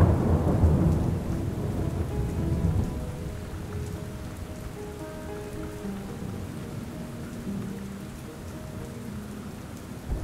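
Steady rain falling, with a low roll of thunder that is loudest at the start and fades after about three seconds. Soft, sustained music notes sound quietly underneath.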